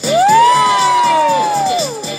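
Children in an audience calling out together in one long "woooo" that rises quickly, holds, and falls away near the end, a delighted reaction to a giant soap bubble taking shape. Background music with a steady beat continues underneath.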